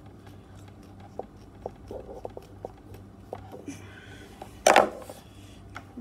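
Light clicks and taps of a small plastic electrical plug and its wires being handled and fiddled with by hand. One loud, brief rustle a little before 5 seconds in.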